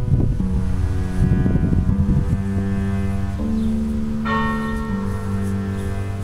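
Church bells ringing, with several strikes whose notes ring on and overlap. A fresh, bright strike comes a little past the middle.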